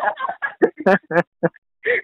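A series of short clucking calls like a hen's, several in quick succession with brief gaps between them.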